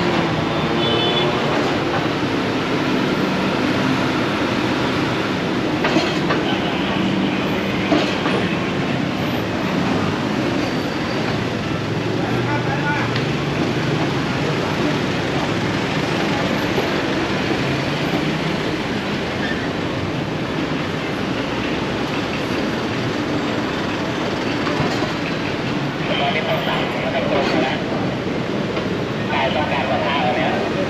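Busy city street noise: steady traffic from cars and motorbikes with an engine hum that slowly rises and falls, a couple of short knocks, and passers-by talking near the end.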